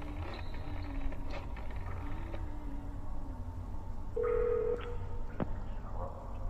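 Telephone ringing over a low steady hum, with a short bright ring tone about four seconds in.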